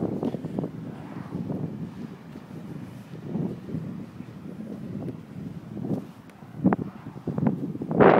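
Wind buffeting the phone's microphone in uneven gusts, with a short sharp sound about seven seconds in.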